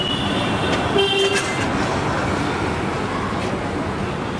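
Steady street traffic noise, with a short vehicle horn toot about a second in.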